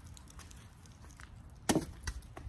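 A cornhole bean bag lands on a wooden cornhole board with a single thud near the end, after a quiet stretch of outdoor background.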